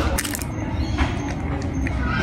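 A cat eating from an aluminium foil tray: a few sharp metallic clicks and clinks as it licks and pushes at the food in the tray, over a steady low rumble.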